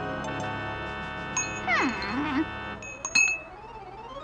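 Cartoon score of sustained chiming tones. About halfway through, a pitched sound swoops steeply down and wobbles, and a few sharp clicks follow just after the three-second mark.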